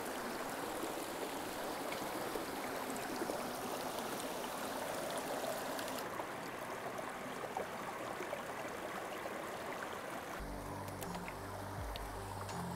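Steady rushing of a small, rocky mountain brook tumbling over boulders in little cascades. About halfway through the sound turns slightly duller, and low sustained music notes come in near the end.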